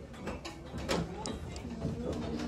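Scattered light clicks and rattles of items being handled on metal wire display racks, with one louder click about a second in.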